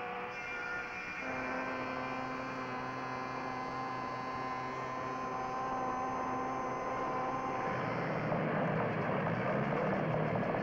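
A steady droning hum of several held tones. The tones shift to a new set about a second in, and the sound turns rougher and wavering, more like an engine, near the end.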